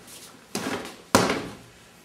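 Back fist strikes landing on a Century Powerline freestanding striking bag: two sharp hits about half a second apart, the second louder.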